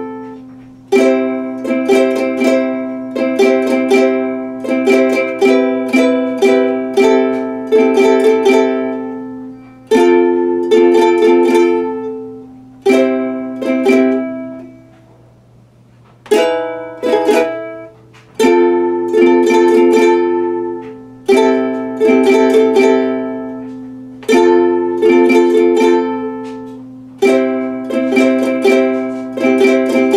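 Ukulele strummed in chords at a steady rhythm, changing chords as it goes. About halfway through the playing stops for a moment and the last chord rings out and fades before the strumming picks up again.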